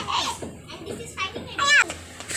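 Young children's high-pitched calls and squeals while playing: a short cry at the start, then two louder, higher calls in the second half.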